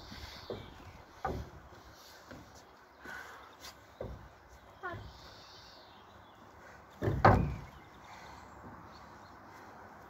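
Scattered soft knocks and handling noises as a fabric resistance band is shifted from one leg to the other, with one louder low thump about seven seconds in.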